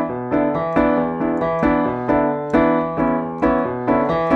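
Digital piano playing a rock bass riff in the left hand under repeated right-hand block chords, the chords struck about twice a second over low bass notes.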